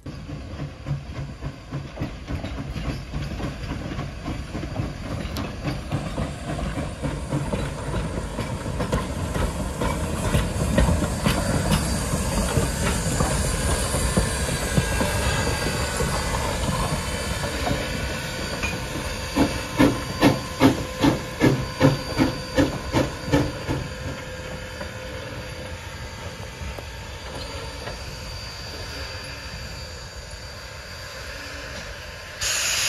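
Sierra Railway No. 3, a 4-6-0 steam locomotive, working along the track with a steady hiss of steam. In the second half a run of strong, regular beats comes about twice a second for a few seconds, then the hiss carries on a little quieter.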